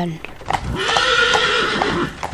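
A horse whinnying: one call of about a second and a half, starting about half a second in, with a wavering pitch over a breathy rasp.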